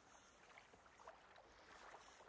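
Faint scratching of a pencil on paper as a long, gently curving line is drawn.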